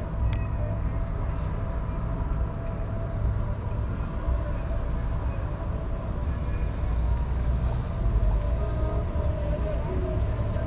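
A car's engine and tyre rumble heard from inside the vehicle as it creeps forward through a drive-thru lane: a steady low drone with a faint steady whine above it.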